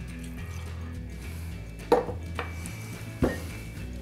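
Soft background music throughout. Two sharp knocks come about two seconds in and again a little over a second later, as a stainless-steel jigger and a glass whiskey bottle are set down on a wooden bar top.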